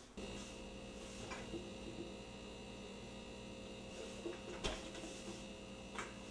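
A steady electrical hum with several fixed tones starts abruptly and runs on, with a couple of light knocks, one about a second in and one a little past the middle.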